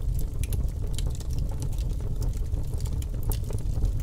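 Steady bubbling liquid sound with a low rumble and many irregular small crackles, like water boiling.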